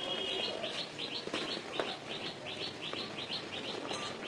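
A bird chirping a fast, even series of short high notes, about five a second, over the soft rustle and light crackle of dry cement powder and lumps being crumbled and dropped by hand.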